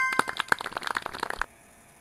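Edited-in 'correct answer' sound effect: a brief chime running into about a second and a half of rapid sharp clicks, which stop suddenly.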